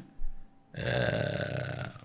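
A man's drawn-out vocal sound, held on one steady pitch for about a second.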